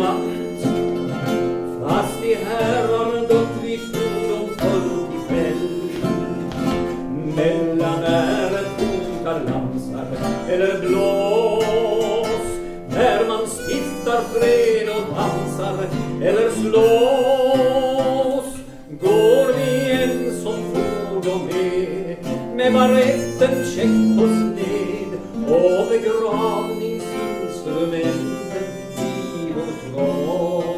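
Live acoustic music: guitar accompaniment with a wavering melody line carried over it.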